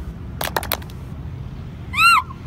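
A quick run of about four sharp hand claps and body slaps from a row of seated dancers, about half a second in. At the very end comes a short, high-pitched cry that rises and falls.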